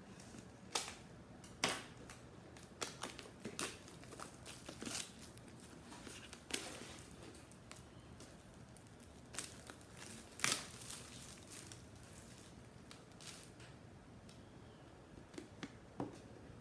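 Hands unpacking a boxed smartwatch: scattered rustling and crinkling of packaging with light taps and clicks of cardboard, a few louder crackles about two, six and ten seconds in.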